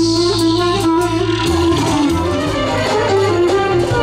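Live band dance music: a sustained wind-instrument melody over steady low bass notes from a keyboard.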